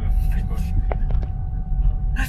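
Low, steady rumble of a Perodua Axia's three-cylinder engine with a stainless steel extractor, heard inside the cabin, with a few light clicks about a second in.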